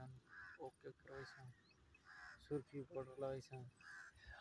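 Faint voices with a few short, harsh bird calls.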